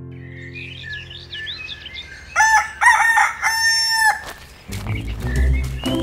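Small birds chirping, then a rooster crowing once, loudly, from a little over two seconds in: a morning sound effect in a cartoon. Background music with a low beat comes in near the end.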